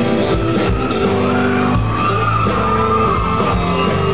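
A live country-rock band playing an instrumental passage between sung lines, with acoustic and electric guitars over bass, in a large room.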